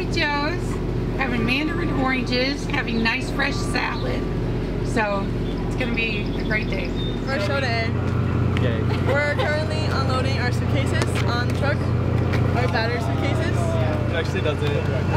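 People talking over a steady low hum, which changes to a different hum about seven seconds in.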